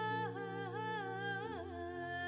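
A voice humming a slow, wordless melody with bending, ornamented notes over sustained background music.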